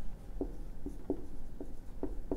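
Whiteboard marker writing on a whiteboard: a few short strokes as characters are written.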